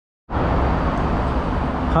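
Steady ambient noise on an open-air elevated station platform, heavy in low rumble, starting abruptly about a quarter second in.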